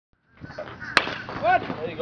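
A baseball bat hits a pitched ball with one sharp crack about a second in. Spectators' shouts start up just after.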